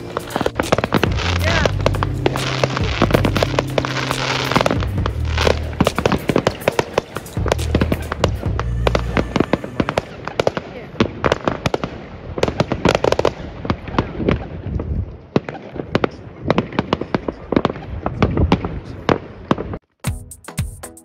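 Many fireworks going off at once: a dense run of overlapping bangs and crackles from aerial shells bursting, the bangs coming more separated in the second half.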